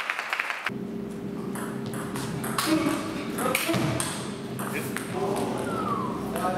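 Table tennis ball bouncing on the hall floor in a quick run of bounces that dies out about half a second in, then a steady hum with voices and a few scattered taps of the ball.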